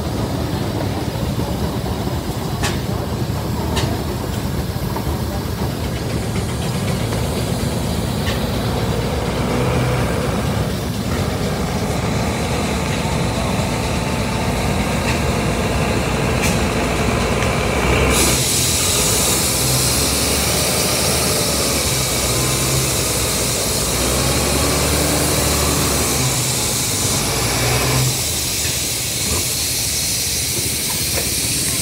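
Steam traction engine running with a steady low rumble. About eighteen seconds in, a loud steam hiss starts and carries on over the rumble.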